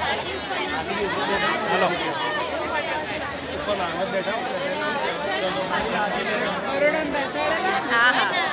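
Crowd chatter: many people talking at once in a steady babble, with no single voice standing out.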